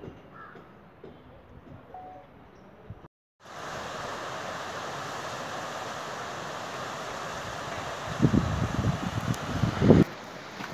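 Faint background for about three seconds, then, after a brief dropout, a steady outdoor rushing noise begins. In the last two seconds wind buffets the microphone in loud, irregular gusts.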